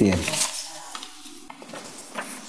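Paper cards being handled and sorted in the hands: a soft rustling with a few faint small clicks.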